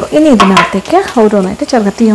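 A woman talking without pause, with onions and green chillies frying in a wok under her voice.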